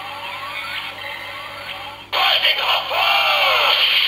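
Sound chip of a Kamen Rider Zero-One SG candy-toy Rising Hopper Progrise Key playing. First comes a rising electronic sweep, repeated three times. About two seconds in, a louder recorded voice call over music cuts in: the 'Rising Hopper' transformation announcement.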